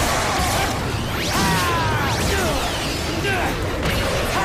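Battle-scene soundtrack: shouts and cries with hits and sweeping effects over a dense, loud bed of noise.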